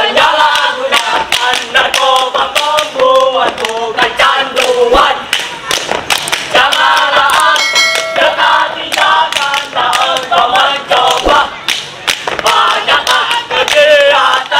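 A group of boys singing a scout yel-yel in unison in Indonesian, punctuated by many sharp rhythmic beats. A short steady tone sounds briefly about eight seconds in.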